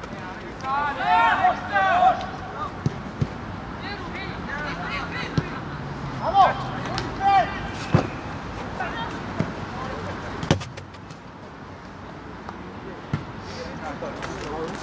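Shouting voices of players and coaches across a football pitch, with several sharp knocks scattered through, the loudest about ten and a half seconds in.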